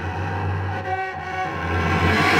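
Solo cello bowing low, sustained notes, with a deep fundamental and a rich set of overtones; the note eases off about a second in, then sounds again.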